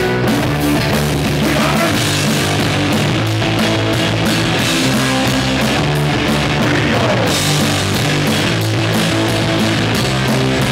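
Live rock band playing: electric guitar through a Marshall amplifier, bass guitar, and a Gretsch drum kit with cymbals, loud and steady.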